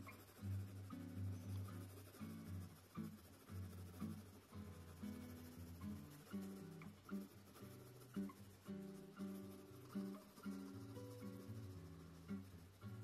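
Quiet background music: plucked acoustic guitar playing a run of notes in a steady rhythm.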